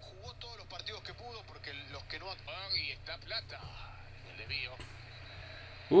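A football match commentator speaking in the highlight footage, played back quietly, over a steady low hum.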